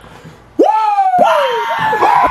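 Loud wordless vocal cries starting about half a second in: several whoops in a row, each rising sharply and then sliding down in pitch.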